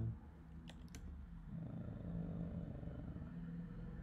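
A few computer keyboard keystrokes just under a second in, then a low, steady hum.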